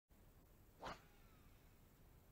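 A fishing rod cast: one quick swish about a second in, then a faint whir falling in pitch as the casting reel's spool pays out line.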